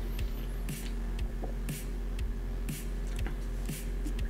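Background music with a steady electronic beat: a low kick drum about twice a second and a snare-like hit about once a second, over a low hum.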